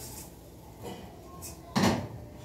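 Quiet scraping of a spoon stirring in a pot on the stove, then one short, loud clunk of cookware near the end.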